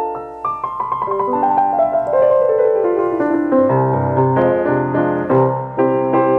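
A 1936 Steinway Model M grand piano fitted with newer Steinway hammers, played by hand: a run of notes steps downward, and bass notes join in about halfway through.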